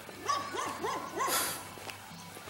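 A dog barking about five times in quick succession.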